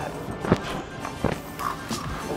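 Background music with a few sharp knocks and rattles as a lidded plastic burrito bowl is shaken up and opened.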